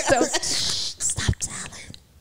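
Women laughing into microphones: breathy bursts of laughter that die away near the end.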